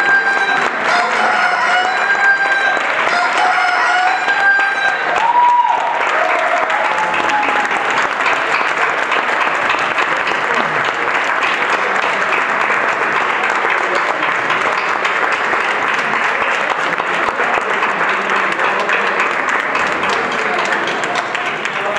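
Dance music ends about five seconds in on a final held note, followed by steady audience applause.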